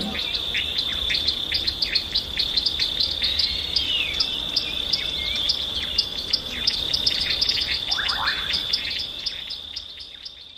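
Nature ambience: a steady high cricket trill with small birds chirping over it, several short chirps a second and a few gliding calls, fading out near the end.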